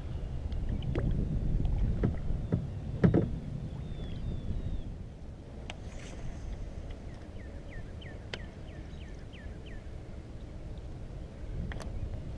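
Wind rumbling on the microphone and water sounds around a plastic kayak while fish and fishing rod are handled, with scattered knocks and clicks and one sharp knock or splash about three seconds in.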